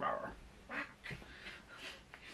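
A man playfully growling 'rawr' in imitation of an animal, a few short rough growls.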